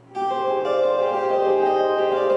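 Three steel-string acoustic guitars start playing together a fraction of a second in, with sustained ringing notes that change about half a second later.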